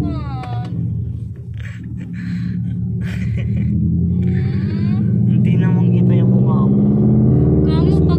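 Laughing and short bits of voice inside a car cabin, over a steady low rumble that grows louder about five seconds in.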